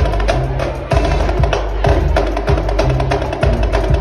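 Snare drum struck rapidly with sticks, dense sharp hits with some stick and rim clicks, over a backing music track with a deep bass line.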